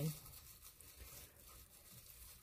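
Faint crinkling and rustling of a crumpled sheet of plastic cling wrap being handled.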